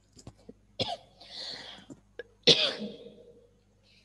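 A person coughing twice, about a second and a half apart, the second cough louder, with a few faint clicks just before the first.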